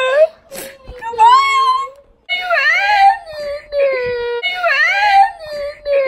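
A girl wailing and crying in a high voice, several drawn-out cries that rise and fall in pitch, the last held long. It is put-on crying, acted for a prank.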